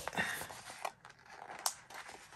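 Paper sticker sheet being handled and lifted, a soft rustling of paper with a couple of sharp ticks, one just before the middle and a brighter one near the end.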